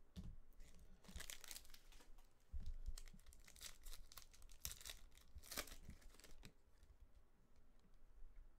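Foil wrapper of a Panini Select baseball card pack being torn open and crinkled, in several short rips, with a soft thump partway through.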